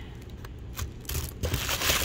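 Tissue paper rustling and crinkling as a hand rummages through it in a box. It is faint at first and grows louder in the second half.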